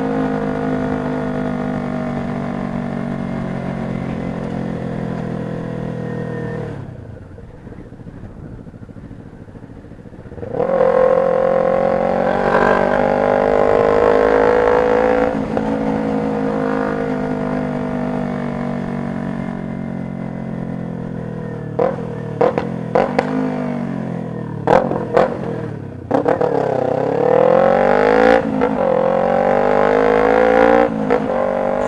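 Kawasaki Ninja 250R parallel-twin engine heard from on the bike while riding. The note winds down gradually, drops away for a few seconds, then picks up suddenly as the bike accelerates. It falls again, then rises and falls several times near the end, with a few sharp clicks.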